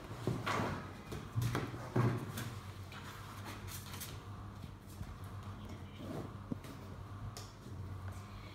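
Cards and game pieces handled on a tabletop: a few light knocks and taps in the first couple of seconds, then quieter rustling with an occasional small click, over a faint steady low hum.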